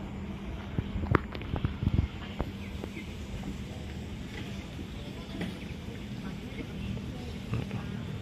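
Steady outdoor background noise with a low hum beside a fast-flowing flooded river, with a handful of sharp knocks between about one and two and a half seconds in.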